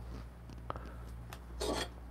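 Faint handling sounds from a glass V60 pour-over dripper being picked up off the desk: a couple of light ticks, then a brief scrape near the end.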